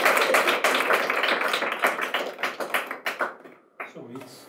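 A small audience applauding, the individual hand claps distinct, thinning out and dying away about three and a half seconds in.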